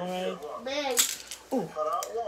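Wooden snap mousetrap giving one sharp metallic click about a second in as its spring bar is worked while being set, with voices around it.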